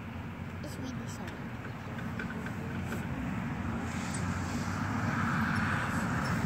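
Road traffic on a freeway: a steady rush of tyres and engines that grows louder in the last couple of seconds as vehicles pass.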